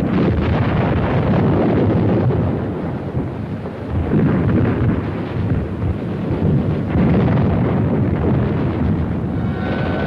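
A dense, continuous rumble of battle explosions and gunfire, swelling and easing several times, on an old film soundtrack with muffled, dull high end. A few steady tones come in near the end.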